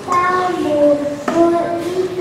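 A child singing into a microphone, with notes held for about half a second each.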